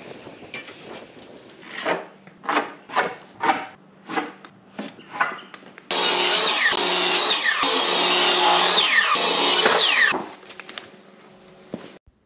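Power saw cutting a pressure-treated 2x8 deck board, starting suddenly about six seconds in and running loud for about four seconds before dying away. Before it, a run of separate rhythmic strokes comes about two a second.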